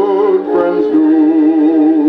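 Old phonograph record playing a sacred song on a turntable; from about a second in, one note is held with a steady vibrato.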